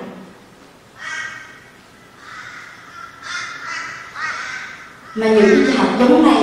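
A woman's voice speaking through a microphone in short phrases with pauses, much louder from about five seconds in.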